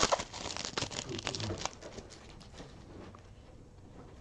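Foil wrapper of a Panini Prizm football card pack crinkling as it is torn open. It is loudest in the first second or two, then fades to a faint rustle as the cards come out.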